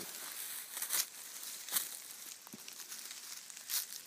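Dry leaf litter crunching and crackling in a few sharp crinkles, about a second in, near two seconds and near the end, over a steady high hiss.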